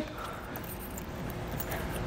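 Quiet handling sounds from the tightening knob on a roof-rack crossbar foot pad being turned by hand to cinch the pad onto the raised rail, over a steady background hiss.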